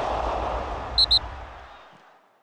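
Logo-animation sound effect: a rushing noise over a low rumble that fades away, with two quick high pings about a second in.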